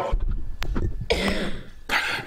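A man coughing to clear his throat into a desk microphone about a second in, after low thuds and a click at the start.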